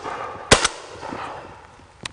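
A single shotgun shot about half a second in, its report rolling away over about a second.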